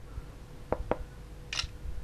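Two light knuckle knocks on the glass screen of a Huawei Mate S smartphone, a fraction of a second apart: the double-knock gesture that takes a screenshot. A short soft hiss follows about half a second later.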